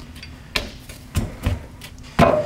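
Steel torque limiter assembly with its chain sprocket being handled and turned over on a table: about four light clicks and knocks of metal parts, two of them duller thumps in the second half.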